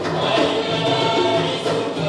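Nubian wedding folk song: a group of voices singing together over steady music.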